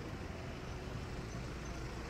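Steady low rumble of a vehicle running along a road, with traffic noise around it.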